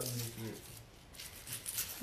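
Kitchen knife cutting through an onion on a cutting board: a few faint, crisp slicing sounds in the second half.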